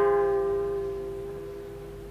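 A single plucked note on a Japanese traditional string instrument rings on and slowly dies away over about two seconds, its bright overtones fading first.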